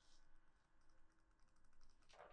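Near silence: room tone with faint clicks of typing on a laptop keyboard.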